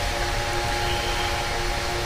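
Computer server's cooling fans running: a steady whirring hiss with a few steady humming tones in it.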